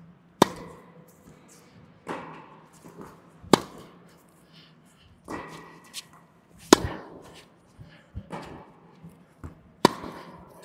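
Tennis rally in an echoing indoor hall: a racket strung with Big Hitter Silver round polyester string strikes the ball with a sharp pop about every three seconds, four times, with quieter hits from the far end of the court between them.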